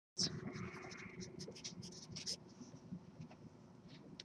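Sharpie felt-tip marker writing a word on paper: a quick series of short, faint strokes for about two seconds, then it stops.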